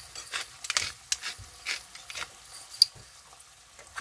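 A hand-twisted pepper grinder cracking peppercorns: a run of dry, irregular crackling clicks that thins out and goes quiet near the end.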